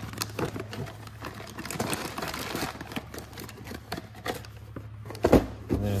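Plastic parts bags crinkling and rustling, with small clicks and taps as parts and small boxes are handled in a cardboard box. A louder knock comes about five seconds in.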